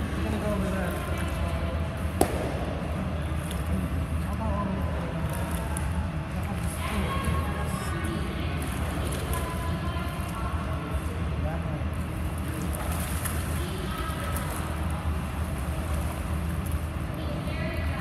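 Echoing indoor swimming-pool ambience: a steady low hum with faint distant voices and light splashing from a child swimming and kicking. One sharp click about two seconds in.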